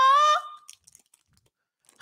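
A woman's voice holding a long sung note that bends up slightly and stops about half a second in. Then near quiet with a few faint crinkles of a plastic wrapper being handled.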